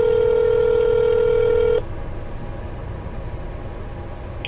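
Telephone ringback tone heard over the call: one steady ring lasting about two seconds that cuts off sharply, followed by low line hiss, as the call rings through to the financial aid office.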